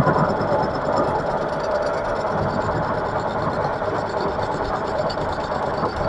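Metal lathe running steadily with a faint held whine, its tool taking a light 0.2 mm facing and outside-diameter cut on a short mild steel workpiece spinning in the three-jaw chuck.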